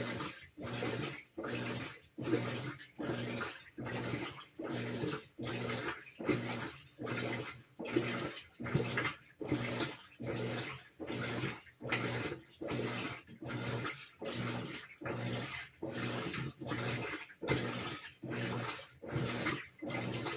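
Whirlpool WTW4816 top-load washer in its wash phase, agitating in even back-and-forth strokes a little over one a second. Each stroke is a humming pulse from the drive with water swishing, separated by short pauses.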